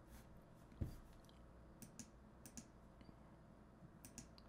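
A few faint computer mouse clicks over near-silent room tone, a soft thump a little under a second in and several sharper clicks around the two-second mark.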